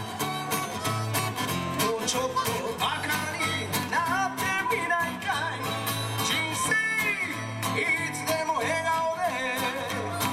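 Live amplified acoustic guitar strumming a steady rhythm while a man sings the melody into a microphone.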